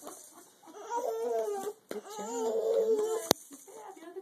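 A crawling baby making two drawn-out pitched vocal sounds, the second longer, followed by a single sharp click a little after three seconds in.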